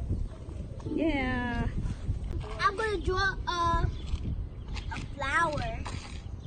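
A young child's high voice making wordless calls: a falling cry about a second in, then several short calls.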